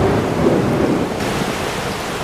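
Steady heavy rain falling, with a low rumble of thunder that slowly eases off.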